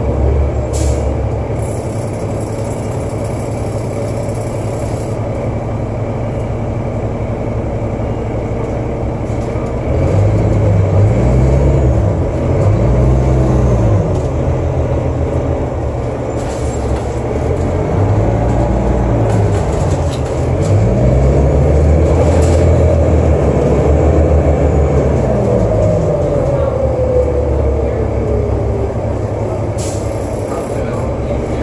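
Cabin sound of a New Flyer D40LF city bus under way: its Cummins ISL diesel and Allison B400 automatic transmission, running without torque-converter lockup. The engine note climbs and drops in pitch a few times about a third of the way in and again past halfway, and a whine slides slowly down in pitch near the end.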